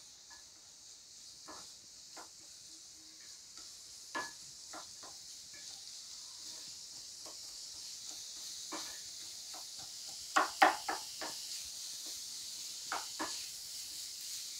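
Chopped onions sizzling in hot oil in a kadai, with a steady hiss that grows slightly louder. A spatula stirs them, scraping and tapping against the pan now and then, with a quick run of louder scrapes about ten seconds in.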